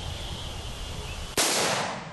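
A single shot from a Bushmaster AR-15 rifle about a second and a half in: a sudden sharp report followed by a short echoing tail.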